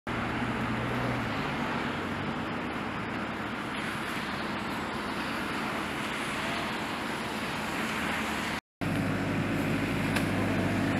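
Steady outdoor noise of a tractor engine running at idle with traffic hiss off a wet road. The low engine hum is plainest near the start and again at the very end, after the sound cuts out completely for a moment shortly before the end.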